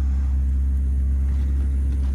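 A steady, unchanging low rumble with no speech over it.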